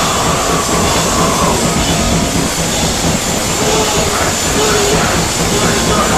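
Live hardcore band in a club: a loud, unbroken wash of amplified distorted guitar noise and crowd, with no clear drum beat.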